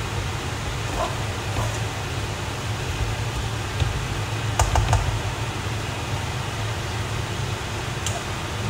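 Yakisoba noodles being stir-fried in a pan, a spatula stirring and scraping through them. A few sharp clicks of the utensil against the pan come about four and a half to five seconds in, over a steady fan-like hum.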